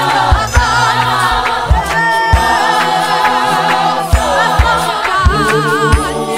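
South African clap-and-tap gospel choir singing a capella in harmony, the voices wavering with vibrato, with sharp hand claps keeping the beat.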